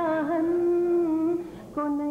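A woman's voice singing a line of an Urdu ghazal in tarannum, the sung style of mushaira recitation. She holds one long steady note, lets it fade about a second and a half in, and starts a new phrase just before the end.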